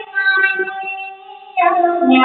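A song playing: a high voice singing long held notes over music.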